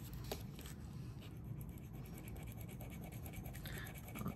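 Faint scratching with a few light clicks from handling a small metal earring during a metal test, at a point where the gold vermeil plating on the post is to be got past.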